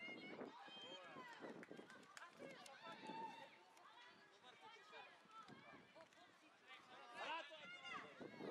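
Faint, indistinct calls and shouts of children's voices on a football pitch, overlapping, with a louder burst of calls near the end.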